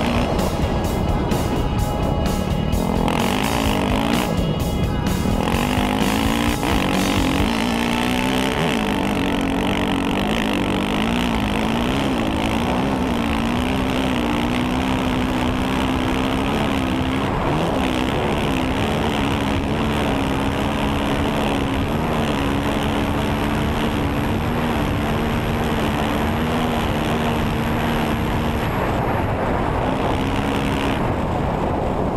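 Honda CRF450X dirt bike's single-cylinder four-stroke engine running at speed on a dirt track, its pitch wavering up and down with the throttle and holding steadier in the second half, over steady wind and tyre noise.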